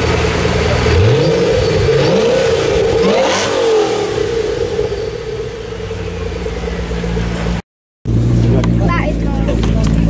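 Ford GT's supercharged V8 idling, revved several times in the first few seconds with the pitch rising each time, then settling back to a steady idle. A short dropout near the end, after which an engine idles steadily under crowd voices.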